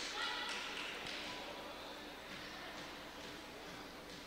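Gym ambience during a basketball free throw: faint crowd chatter echoing in a large hall, with a basketball bouncing on the court floor.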